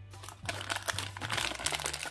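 Plastic doll wrapper being handled and crinkled, with dense crackling starting about half a second in and getting busier. Quiet background music runs underneath.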